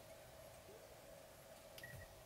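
Near silence: room tone with a faint steady hum, and one faint click near the end.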